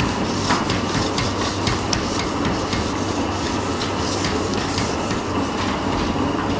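Handheld whiteboard eraser rubbing and scraping across a whiteboard in quick strokes, with small scratchy clicks that are densest in the first couple of seconds and fewer later. A steady hum of room noise runs underneath.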